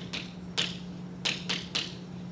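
Chalk writing on a blackboard: about five short taps and strokes as the chalk hits and drags across the board.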